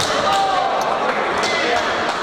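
Voices and shouts in a boxing hall, with several sharp thumps from the boxers moving and exchanging in the ring.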